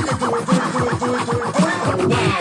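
DJ scratching a vinyl record on a turntable: quick back-and-forth swipes that glide up and down in pitch over a dance track with a held note.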